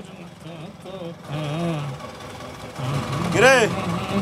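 A motor scooter's engine running at idle under voices, with one loud drawn-out voice call rising and falling in pitch near the end.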